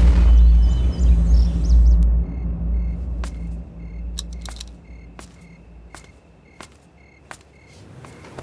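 Film background score: a deep low rumble that fades away over the first five or six seconds, under a faint evenly pulsing high tone and a few light ticks.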